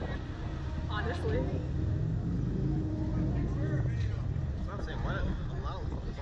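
Riders' short bits of voice and laughter over a steady low rumble.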